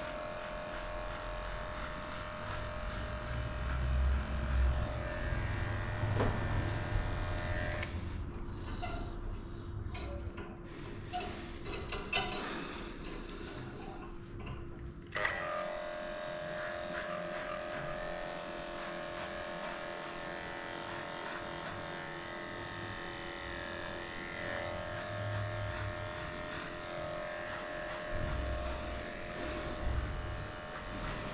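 Cordless electric dog clipper with a 3 mm (#8.5) blade, its motor running steadily as it shaves a matted coat off close to the skin, the mat coming away in one piece. The clipper's hum stops about eight seconds in and starts again with a click around fifteen seconds in.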